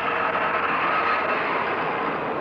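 Small diesel locomotive of a narrow-gauge beach train running past with its carriages, a steady noisy rumble. A faint high whine sounds over it and fades a little after halfway.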